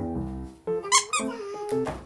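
Cute, light background music of short stepped notes, with a short high squeak about a second in and a click near the end.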